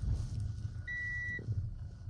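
Low, steady rumble of the VW e-Delivery electric truck rolling along, heard inside its cab, with no engine note. About a second in, a single high electronic beep sounds for about half a second.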